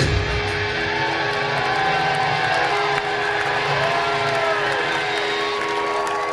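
Live rock band playing an instrumental passage. Just after the start the drums drop out, leaving a held bass note under sustained electric guitar lines with slow bends in pitch.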